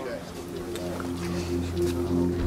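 Background score: sustained low notes swelling in under faint voices.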